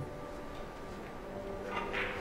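Carom billiard balls knocking during a three-cushion shot over quiet hall hum, the clearest knock coming near the end.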